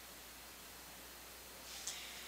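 Faint steady hiss of room tone and microphone noise, with a brief soft rush of slightly louder high-pitched noise near the end.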